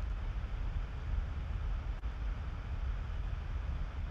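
Steady low rumble with a faint even hiss and no events: background noise picked up by a video-call microphone in a pause between voices.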